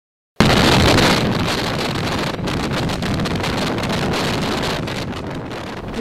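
Heavy wind buffeting the microphone of a camera on a moving police vehicle in city traffic, with vehicle noise underneath. It starts abruptly about half a second in.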